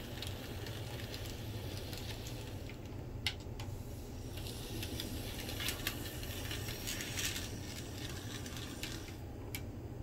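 N scale model diesel locomotive running on the track, with a steady low hum and scattered light clicks and rattles as it rolls over the rails.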